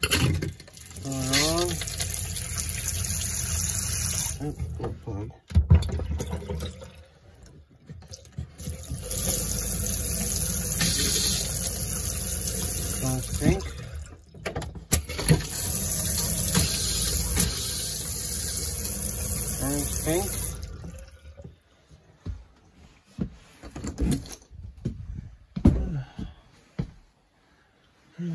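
Camper bathroom sink faucet running in three spells, with the RV water pump humming underneath as it pushes RV antifreeze through the water lines to winterize them. The flow stops about three-quarters of the way in.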